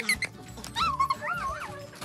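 Background music, with a Hungarian vizsla whimpering in a few short rising-and-falling whines about a second in.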